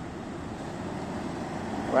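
A silver SUV rolling slowly past close by, giving a steady noise of engine and tyres.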